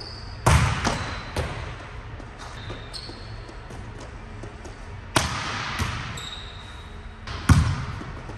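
A volleyball being hit and landing on a hard court floor: three loud, sharp smacks about half a second in, just after five seconds and near the end, the first followed by two smaller bounces, each ringing on in the echo of a large gym hall.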